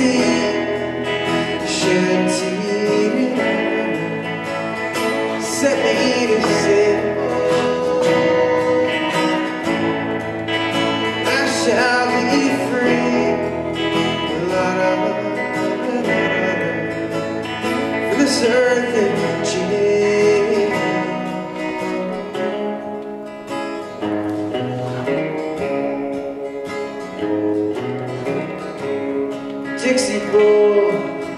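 Steel-string acoustic guitar strummed in a steady rhythm, with a man singing over it.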